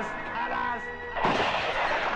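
Background film score with a singing line, cut by a single loud handgun shot about a second in, followed by a long reverberating tail.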